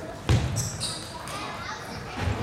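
Table tennis being played in a sports hall: one sharp knock about a quarter-second in as the server readies his serve, then a brief high squeak, over a murmur of spectators.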